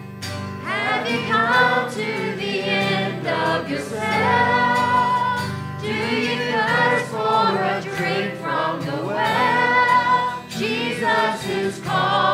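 A church worship team and congregation singing a slow worship song together, with instrumental accompaniment under the voices.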